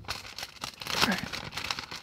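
Paper rustling and crinkling as an envelope is opened and the folded letters inside are pulled out and unfolded, in short irregular crackles.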